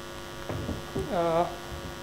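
Steady electrical mains hum, with a short voiced 'uh' from a man about a second in.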